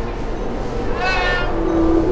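Death-metal grindcore track, with dense distorted band sound throughout. A high-pitched shrieked vocal line bends up and down about a second in, and a held lower note follows near the end.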